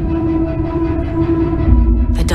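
Steady low rumble under a sustained humming tone: a drone from a TV drama's soundtrack. It swells slightly near the end.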